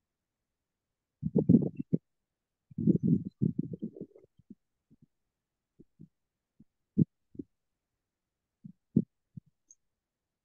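Muffled low thumps and bumps coming through a video call's audio, in two short clusters early on and then single knocks, with the line dropping to dead silence between them.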